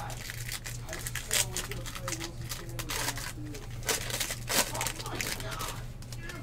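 Plastic bag and foil trading-card pack wrappers crinkling as hands scoop and push them around: a run of irregular crackles, loudest a few times near the middle, over a steady low hum.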